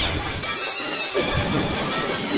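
Cartoon soundtrack heavily distorted by editing-app effects: a harsh, dense noise filling the whole range over background music, with a garbled low sweep about a second in.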